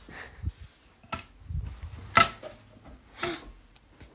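Scattered light knocks and rustles from things being handled while rummaging through furniture, the loudest a sharp knock a little past two seconds in.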